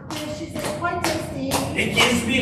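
Rhythmic hand clapping and stomping keeping time to a sung drinking song, in a short gap between sung lines, with brief snatches of voices. The strikes fall about every half second.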